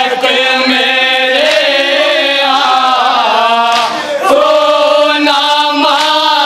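A group of men chanting a noha (Urdu mourning lament) in unison, melodic lines held and sliding, amplified through microphones.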